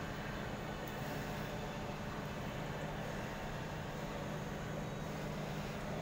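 Steady low hum and hiss of building ventilation or air conditioning, unchanging throughout.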